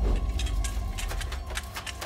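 Animation sound effects: a deep low thud right at the start, then a fast run of sharp clicks and clattering that thins out near the end.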